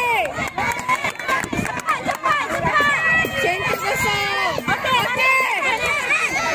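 Sideline crowd at a children's netball match shouting and cheering, many high voices overlapping at once, with scattered sharp knocks in the first half.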